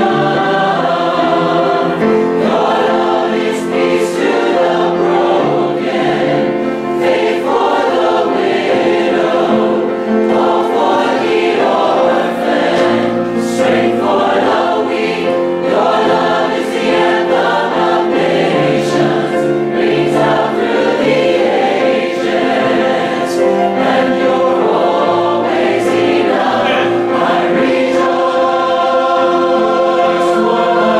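A choir singing together in several parts, holding long chords.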